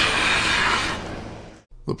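Hand plane shaving along the edge of sapele boards: one long planing stroke, lasting about a second and a half and fading out, then ending abruptly.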